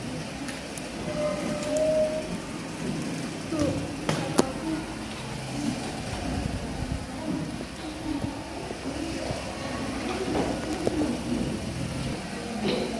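Classroom room sound: scattered, indistinct voices of young children at their desks, with a single sharp knock about four seconds in.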